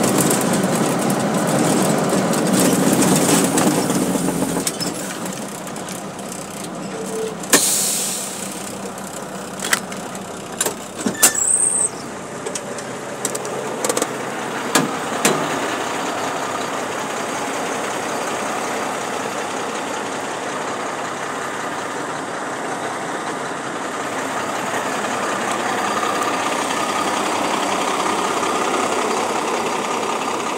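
Heavy truck diesel engine running, loudest near the start as heard inside the cab, then idling steadily. A handful of sharp knocks and clunks come in the middle.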